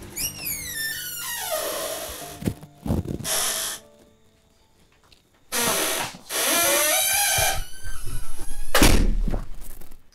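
Suspense film-score stings: a falling, sliding tone that comes twice, a short thud about three seconds in, and a deep boom, the loudest sound, near the end.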